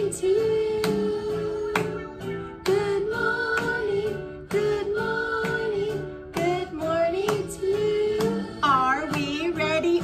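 Children's good-morning song playing: voices singing over music with a steady beat, a little more than one beat a second.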